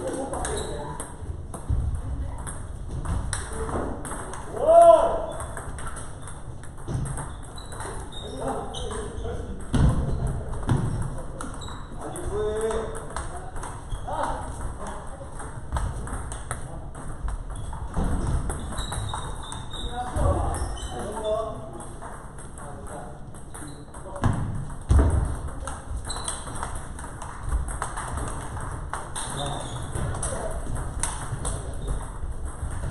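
Table tennis balls clicking off bats and tables in rallies on several tables at once, with voices calling out in the hall, loudest about five seconds in.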